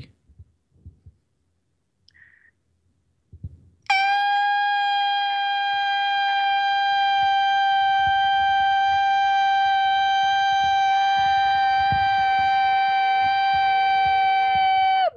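A loud, ear-splitting high note held at one steady pitch for about eleven seconds, starting about four seconds in after near silence.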